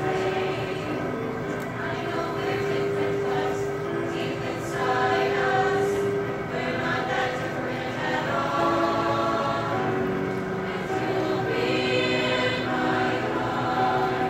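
A mixed-voice high school show choir singing, with long held notes that move from pitch to pitch.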